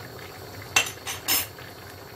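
Two sharp clinks of kitchenware, a little under a second in and again half a second later, over the low steady sound of tomato sauce simmering in a large stainless steel pot.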